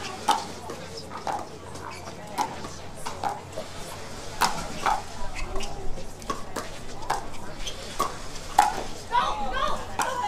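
Pickleball rally: paddles hitting the hard plastic ball in quick, unevenly spaced pops, about two a second, mixed with the ball's bounces on the court.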